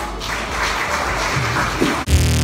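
Audience applauding, an even clatter of clapping, with music beginning to come in near the end.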